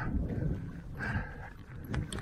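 Mountain bike riding over a rough, rocky trail: an uneven low rumble and rattle with wind on the microphone, and the rider breathing hard, with two heavier breaths at the start and about a second in.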